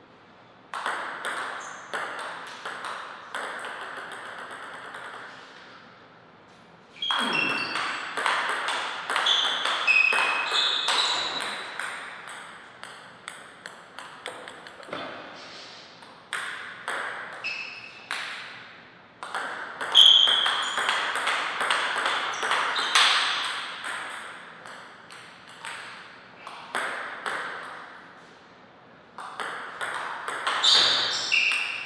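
Table tennis rallies: the plastic ball clicking in quick succession off the rubber-faced bats and the tabletop, in several rallies separated by short pauses between points.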